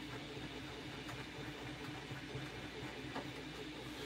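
Quiet room tone: a faint, steady low hum, with a few soft ticks of a fineliner pen on paper.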